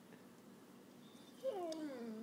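Mastiff whining for attention: one drawn-out whine starts about a second and a half in, falling in pitch and then holding low.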